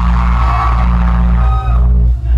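Loud live rock band music: amplified electric guitar and a steady low drone held through, with a higher tone ringing over it.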